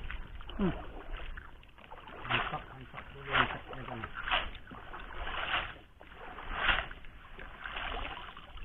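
A hand-thrown cast net, its lead-weighted skirt dunked and lifted at the surface of muddy river water, making a series of swishing splashes about once a second.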